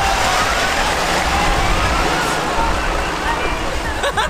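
Tractor engines running at full throttle as two small tractors pull away, with people's voices behind.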